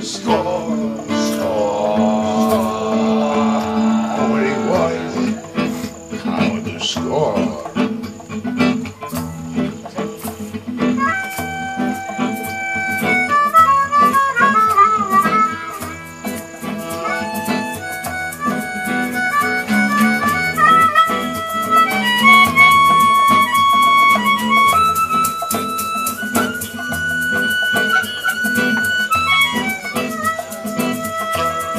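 Live acoustic band playing an instrumental break: guitar and djembe keep a steady beat while a harmonica solos, with long held notes stepping between pitches from about ten seconds in.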